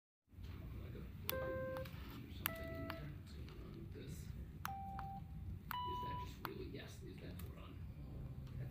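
Four electronic beep tones, each about half a second long and each a step higher in pitch than the last, set off by presses of push buttons on a Teensy microcontroller breadboard circuit. Each tone starts with a click.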